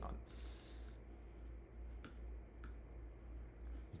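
Two faint computer mouse clicks about half a second apart, over a low steady hum.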